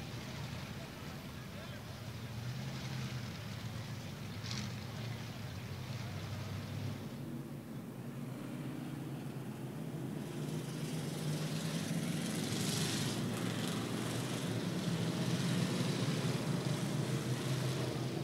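Engines of a field of short-track stock cars running slowly behind the pace truck under caution: a low, steady drone that slowly grows louder.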